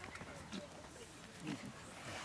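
A Khillar calf held down for nose-roping gives a couple of short, low grunts, the louder one about a second and a half in.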